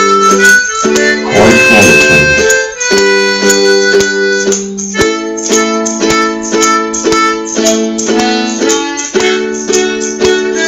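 Ukulele strummed in a steady rhythm, with a harmonica playing chords and melody over it and short jingling hits about twice a second from a tambourine.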